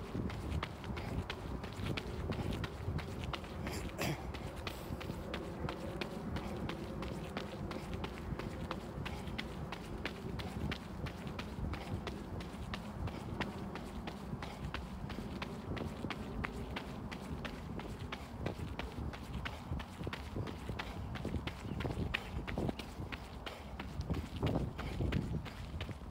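Running footsteps on a gravel path, a steady rhythm of about three steps a second.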